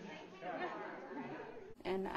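Indistinct talking, with no clear words, then an abrupt cut near the end to a woman's voice, louder and clearer.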